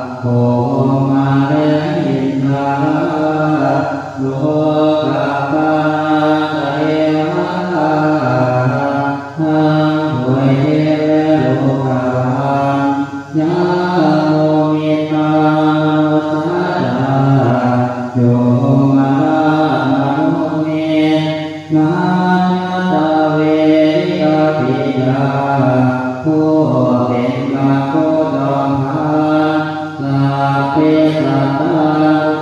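Thai Buddhist monks chanting the Pali verses of the evening service (tham wat yen) together in unison, in a low, near-level chant with small steps in pitch. Long phrases are broken by brief pauses for breath every few seconds.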